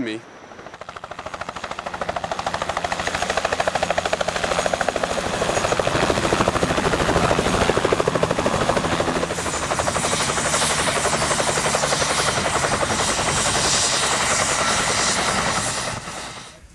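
Close-up helicopter with its rotor blades beating in a fast, even rhythm. The sound swells over the first few seconds, then holds steady. About halfway through, a thin high turbine whine joins the rotor beat.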